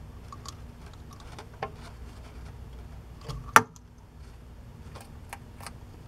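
Scattered light clicks and taps as a superworm is hand-fed to a baby bearded dragon with metal tweezers, with one sharp click about three and a half seconds in.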